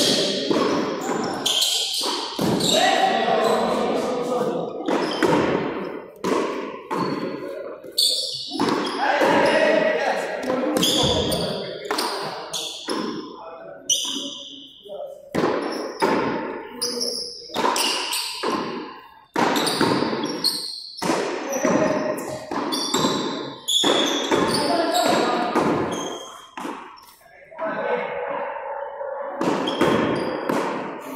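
Frontón a mano rally: a hand-struck ball repeatedly smacking off the front wall and floor and off players' palms, a quick run of sharp knocks echoing in a large hall.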